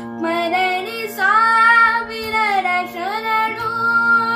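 A boy singing a Kannada song solo over a steady drone: he holds a long, wavering note from about a second in and bends it downward near three seconds.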